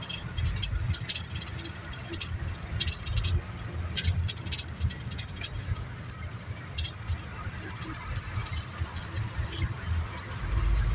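Inside a matatu minibus on the move: a steady low rumble of engine and road, with frequent small rattles and clicks from the body and fittings.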